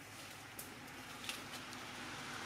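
Faint outdoor background noise with two soft clicks, the first about half a second in and the second a little past one second.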